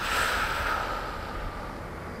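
A long, breathy exhale close to the microphone, fading away over about a second and a half, over a steady background hiss.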